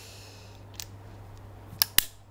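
Enfield break-top revolver being loaded and closed: a light metallic click about a second in, then two sharp clicks close together near the end as the action is snapped shut.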